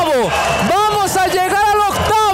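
A man's voice talking over the murmur of an arena crowd.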